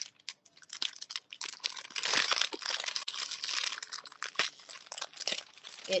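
Plastic cookie-package wrapper crinkling and rustling as it is handled and pulled open at its seam, densest for a couple of seconds in the middle.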